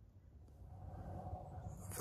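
Faint rustling of a handheld camera being moved, growing slowly louder from about a quarter of the way in.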